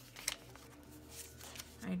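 Paper sticker sheets being flipped through and handled, with a sharp crisp rustle about a quarter second in and faint paper rustling after it.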